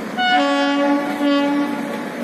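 Electric locomotive's air horn, a WAP-4, sounding two blasts as the train departs: a long one followed by a shorter one.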